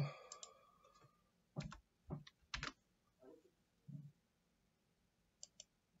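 Sparse clicking of a computer mouse and keys, faint over near silence. A few separate clicks and taps fall in the first three seconds, then a quick pair of clicks comes near the end.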